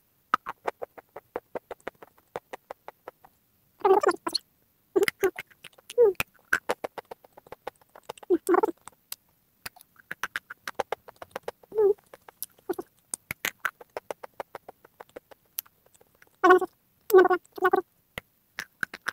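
Close-up mouth crunching as rough white crumbly chunks are bitten and chewed: a dense run of small crisp crackles, with louder bites about 4, 5, 8 and 12 seconds in and three loud crunches in quick succession near the end.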